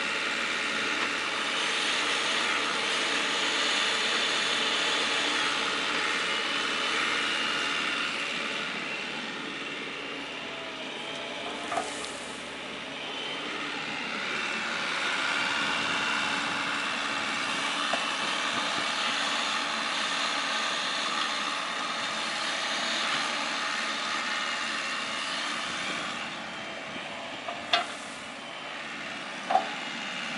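Bobcat E45 mini excavator running steadily as it digs, its engine and hydraulics working. A few short knocks stand out, about 12, 18 and 28 seconds in.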